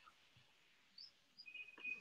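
Near silence, with a few faint, brief high chirps from about a second in.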